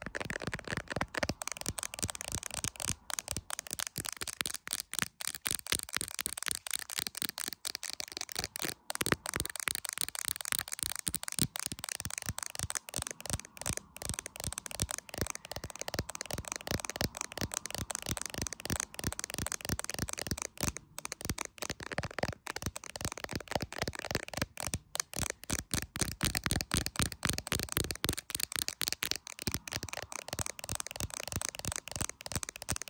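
Long pointed fingernails tapping fast and continuously on the back of an iPhone in a clear plastic case, around the camera lenses, making a steady stream of sharp clicks.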